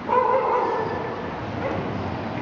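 Several bugles sounding together: a loud held note that starts abruptly and fades over about a second.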